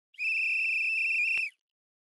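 A single steady, high-pitched whistle blast lasting just over a second, cutting off sharply, with a faint click shortly before it ends.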